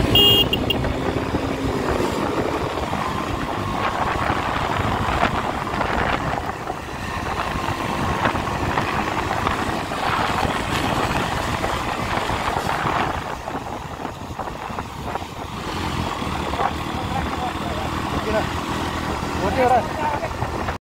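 Steady motorcycle riding noise: engines running at road speed, with wind rushing over the microphone.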